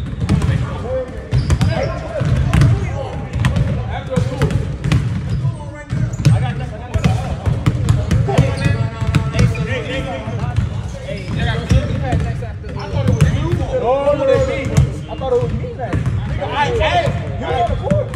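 Several basketballs bouncing on a hardwood gym floor, with many irregular, overlapping dribble thuds and ball impacts in a large gymnasium. Players' voices call out over them.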